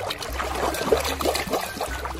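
Shallow water splashing and dribbling as a plastic toy shark is dunked and swished through it by hand, an uneven run of small splashes with one sharper splash about a second in.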